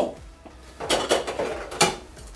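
Dishes clattering as they are picked up and handled: a run of knocks and clinks about a second in, ending in a sharper clink near the end.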